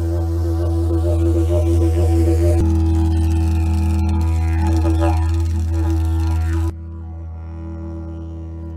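Didgeridoo playing one steady low drone with shifting, wobbling overtones. About two-thirds of the way through it suddenly drops in volume and carries on more softly.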